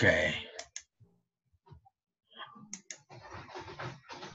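A computer mouse clicked a few times, in two quick pairs about two seconds apart, with brief low speech at the start and near the end.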